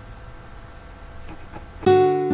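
A low steady background hum, then background music of plucked guitar notes starts just before the end and is the loudest sound.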